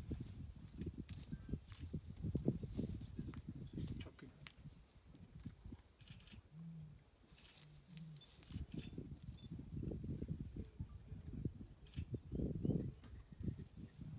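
Cheetah feeding on a carcass: irregular tearing, chewing and crunching with low thuds, easing off for a few seconds midway before picking up again.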